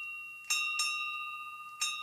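A bell chime struck in short runs, each stroke ringing on and slowly fading. Two strokes come about half a second in, close together, and another comes near the end.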